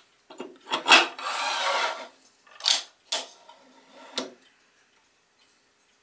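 Sliding fence extension of a Bosch GCM 12SD miter saw being unlocked and slid off its rail: a click, then about a second of metal scraping as it slides, then three short knocks as it comes free and is handled.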